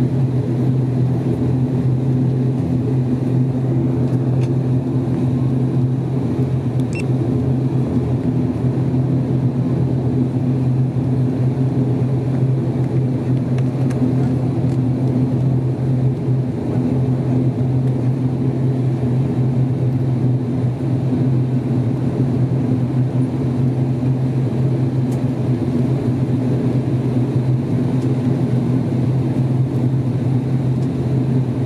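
ATR 42-600 turboprop engines and propellers heard from inside the cabin while the aircraft taxis. It is a steady, even drone with a strong low hum that does not rise or fall.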